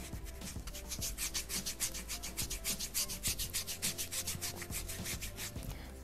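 A dry paintbrush scrubbed rapidly back and forth over a wooden board, a fast run of short rubbing strokes, several a second, that stops shortly before the end. This is dry-brushing: working a nearly dry brush over the wood to give it an aged finish.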